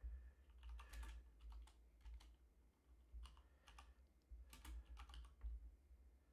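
Faint typing on a computer keyboard: several quick runs of keystrokes with short pauses between, over a low steady hum.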